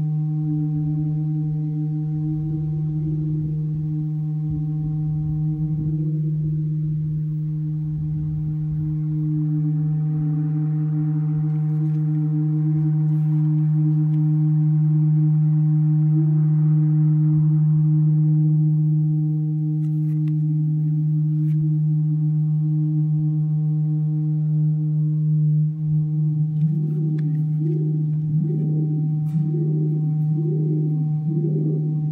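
Acoustic feedback from a contact microphone on a metal cistern with an amplifier beneath it: a strong steady low drone with several higher ringing tones held above it, the middle tone bending slightly in pitch as metal objects on the cistern shift the resonances. Near the end a wavering tone comes in, pulsing about once a second, with a few light metallic clicks.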